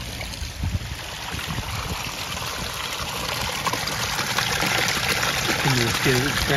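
Water running over pebbles in a small pond-liner garden stream and falling off its edge into a basin: a steady splashing rush that grows gradually louder toward the end.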